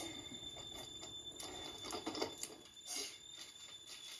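Handling noise: light, irregular clicks and crinkles as a plastic-packaged toy and a cellophane-wrapped Easter basket are handled, over a faint steady high-pitched whine.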